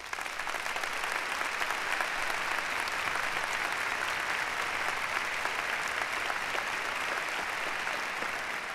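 Large audience applauding in a big hall. The clapping swells up at the start and then holds steady.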